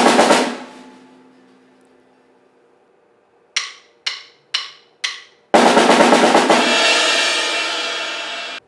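Electric guitar and drum kit: a loud chord with crashing drums fades out in about a second. After a quiet pause come four sharp drumstick clicks about half a second apart, a count-in. Then the full band comes in with a loud guitar chord and cymbal crash that rings on.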